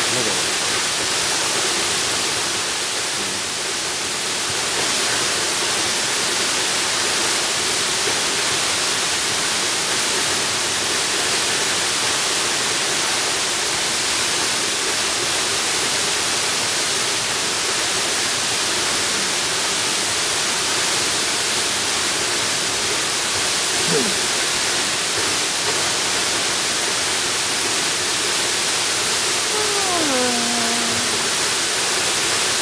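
Steady, even rush of a tall waterfall's falling water, unchanging throughout.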